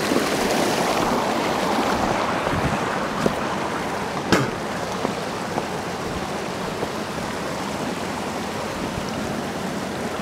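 Creek water rushing over a small rapid and spillway: a steady roar, a little louder over the first few seconds, then slightly softer. A single sharp click about four seconds in.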